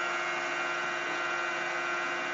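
Bedini-style transistor pulse motor (a 10-transistor energizer with 15 run coils) running fast. It gives an even hum of several steady held tones that do not change in pitch or loudness.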